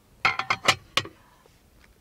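Rusty antique cast iron waffle iron knocking against its iron stand as it is handled: several quick metallic clinks with a brief ring in the first second, then quiet handling.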